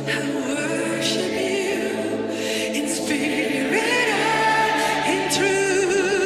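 Worship song with several voices singing in harmony. About four seconds in, a voice holds a long high note, then goes on with vibrato.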